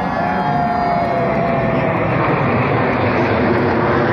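Formation of military jet aircraft flying overhead: jet engine noise that swells steadily louder, with a high whine that sinks slightly in pitch over the first two seconds.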